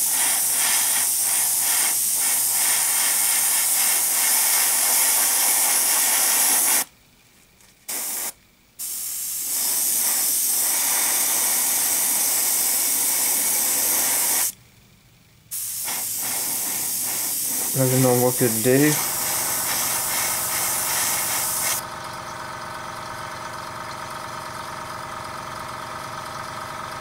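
Iwata Eclipse HP-CS airbrush with a 0.3 mm needle spraying acrylic paint: a loud steady hiss of air in long passes, cut off twice for about a second, with a short burst between the two gaps. Near the end the hiss stops and a quieter steady motor hum carries on.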